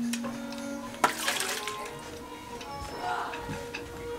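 Cartoon soundtrack: soft held musical tones with scattered light clicks, and a brief swishing noise about a second in.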